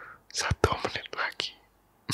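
A man whispering close to the microphone, with a few sharp mouth clicks; it stops about three quarters of the way through.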